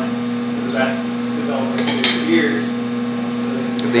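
Steady electrical hum, with soft puffing and mouth sounds as a man draws on a tobacco pipe, and a couple of sharp clicks about two seconds in.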